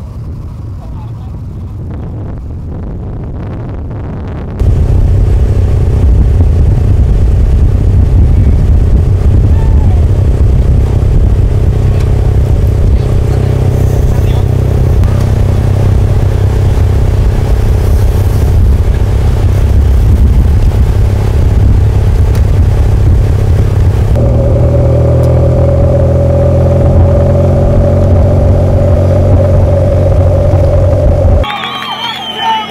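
Loud, steady motor-vehicle engine drone, starting suddenly about four and a half seconds in after a quieter rumble, and changing tone near the end.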